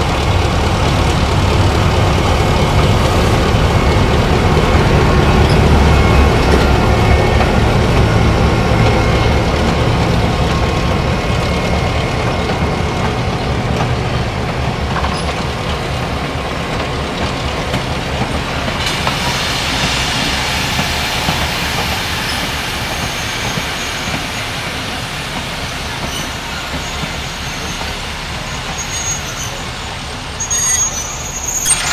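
Diesel locomotive T411 passing with its train of vintage coaches. The heavy engine rumble is loudest in the first few seconds, then gives way to the steady running noise of the coaches' wheels on the rails, which fades slowly as the train draws away. A brighter, hissier rail sound comes in about two-thirds of the way through.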